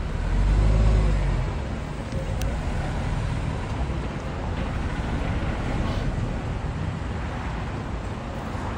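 Street traffic: road vehicles running by, with a low rumble that swells about a second in and then settles into steady traffic noise.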